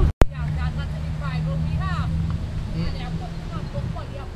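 Voices talking in the background over a steady low hum. The sound cuts out completely for a moment right at the start.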